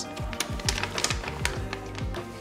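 Background music with low held notes and sharp clicking percussion.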